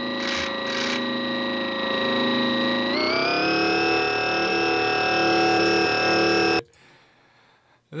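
Orchestral film-score music holding a sustained chord that moves up to a higher chord about three seconds in, then cuts off suddenly, with two short hisses near the start.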